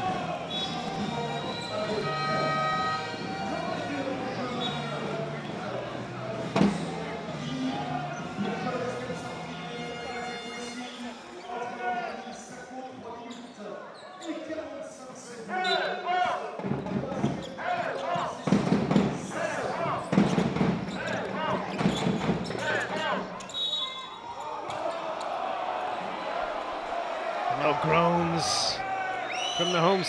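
Basketball dribbled on a hardwood arena court: a run of sharp bounces, about one every half second, in the middle part, over the echoing noise of an indoor arena crowd.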